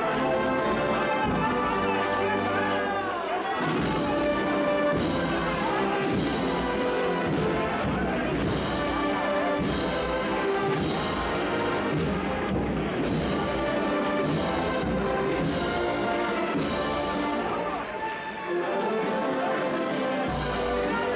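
Brass and wind band playing a Holy Week processional march, with many held brass notes and a steady drum beat, mixed with the voices of a large crowd.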